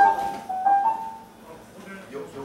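A few held single notes on an amplified instrument, starting with a sharp attack and then stepping up in pitch, fading out over the second half, as the band noodles between songs.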